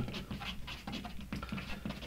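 Chalk marker scraping and squeaking on a chalkboard wall in short, irregular strokes as a word is written.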